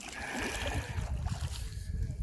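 Canoe paddle stroking through river water, a steady swishing, with wind rumbling on the microphone.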